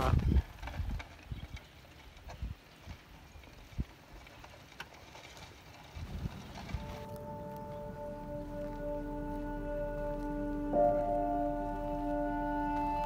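Faint outdoor background with a few scattered soft knocks and low bumps. About six seconds in, slow background music of held chords comes in, with a low drone underneath and a change of chord near the end.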